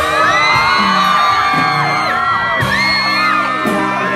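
Live band music at a concert with a crowd of fans screaming and whooping over it, many high voices overlapping.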